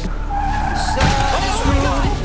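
Car tyres skidding on the road, with a song playing over it.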